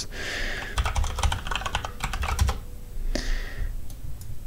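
Typing on a computer keyboard: a quick run of key clicks lasting about two seconds as a password is entered, followed by a short hiss a little after three seconds.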